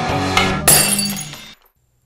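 Rock guitar intro music for a sports segment, cut by a sharp crash-and-shatter sound effect about half a second in. It rings out and fades to silence by about a second and a half.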